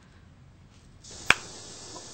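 A single sharp click as a mobile phone call is hung up, over a faint hiss.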